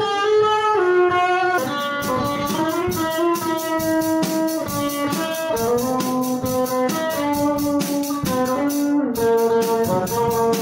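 A live rock band: a drum kit and an electric guitar play together. A melody of long held notes runs throughout, and the drums come in about one and a half seconds in with a steady beat and cymbal hits.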